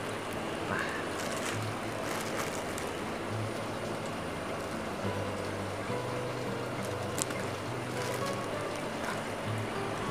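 Steady trickling water from aquarium filters and aerators, under faint background music. A few light rustles and clicks come from the fish net and the plastic bag.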